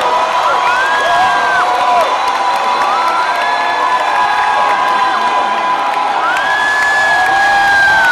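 Large concert crowd cheering and shouting, with several long held high whoops rising over the noise one after another.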